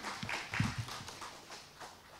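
Sparse, irregular clapping from a small audience, about four claps a second, fading off toward the end. A single low thump comes just after half a second in.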